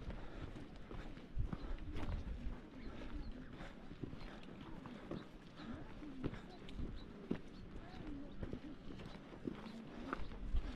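Footsteps crunching irregularly on a stony dirt and gravel track, with faint voices.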